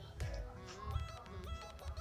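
Electronic background music at low level: sustained synth notes over a recurring bass beat.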